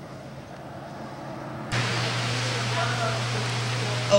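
Faint outdoor background noise, then after a sudden cut, loud echoing indoor pool-hall noise with a steady low hum and faint distant voices.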